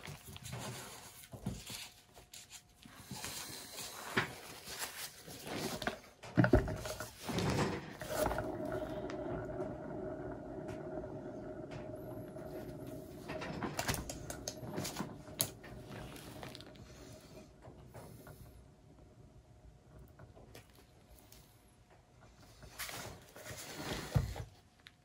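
A paint-pouring turntable spinning with a canvas on it: a steady whirring hum from about eight seconds in that slowly fades as it coasts to a stop. Scattered knocks and taps come before it, and there is a short rustle near the end.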